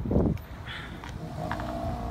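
Outdoor traffic rumble with wind on the microphone, and a short loud bump at the very start.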